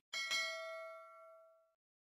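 Subscribe-button animation sound effect: two quick clicks, then a single bell-like ding that rings for about a second and a half and fades away.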